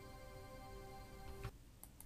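Faint background music of sustained chords that cuts off about one and a half seconds in with a short click, followed by a faint tick.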